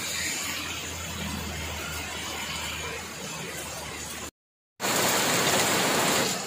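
Steady heavy rain falling, with a low hum under it for the first few seconds. After a short dropout a little past four seconds in, the rain comes in louder and closer, falling on wet pavement.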